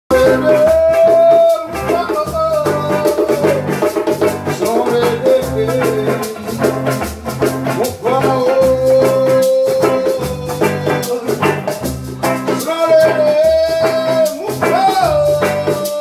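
Live band playing: hollow-body electric guitar, acoustic guitar and djembe under a lead melody at the microphone that holds long, steady notes.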